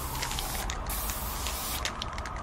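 Aerosol spray-paint can hissing, with several short, sharper bursts of spray over a steady low rumble.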